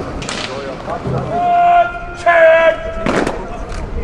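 Two long, drawn-out shouted words of command, each held at one steady pitch: the first about a second and a half in, the second just after two seconds. A short, sharp burst of noise follows a little after three seconds.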